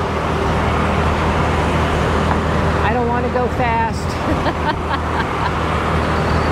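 Single-cylinder engine of a 2015 Honda Forza 300 scooter running at a steady cruise, with a steady low hum under wind and road noise on a helmet microphone. A few words are spoken about three seconds in.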